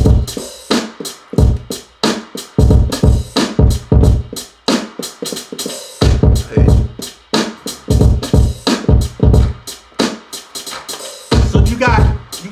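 A programmed boom bap hip hop drum pattern playing back: kick, snare and a steady run of hi-hats. A wavering pitched sound comes in near the end.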